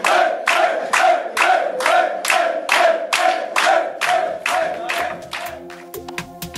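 A group of men chanting and clapping in time, about two claps a second, in celebration. It fades about five seconds in as electronic music with a steady beat begins.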